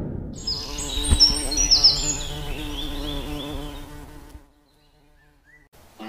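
Logo intro sound effect: the tail of a boom fades, then a wavering buzz with high chirps over it runs until about four and a half seconds in and stops. After a short pause, music starts right at the end.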